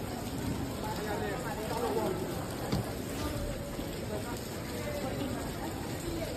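Indistinct voices of people talking in a large, hard-floored terminal hall over a steady hiss.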